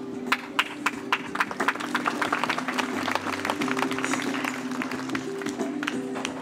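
Audience clapping, a spatter of irregular claps that fades out about five seconds in, over background music with steady held notes.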